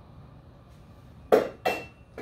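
Two sharp metal clanks about a third of a second apart, a little past halfway, as metal mini-bike parts are set down on a steel lift table.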